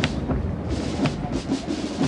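F-16 fighter jet flying overhead: a steady, low jet noise, with a sharp knock about a second in.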